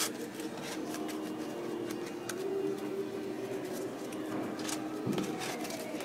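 Flexible plastic puzzle-lamp pieces being bent and hooked together by hand: scattered light clicks and rustles, a few seconds apart, over a steady low hum.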